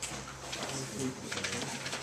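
A pen scratching lightly on a whiteboard while writing, under a low murmuring voice.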